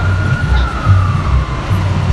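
Emergency-vehicle siren in a slow wail: one drawn-out tone that rises a little and then falls away in the second half. A loud, low, irregular pulsing rumble runs underneath.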